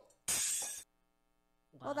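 A short, sudden crash sound effect, about half a second long, heavy in hiss-like high noise, starting a quarter second in and cutting off abruptly.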